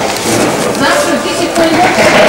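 Indistinct talking from people close by, with a hiss of noise underneath.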